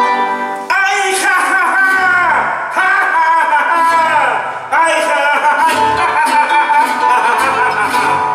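Son jarocho ensemble playing live: jaranas and guitars strummed and plucked with a jarocho harp, and low bass notes coming in and out, while a man sings over them.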